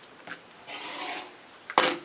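Fabric and a clear acrylic quilting ruler rubbing and sliding across a cutting mat as pieces are shifted into place, with a short sharp sound near the end.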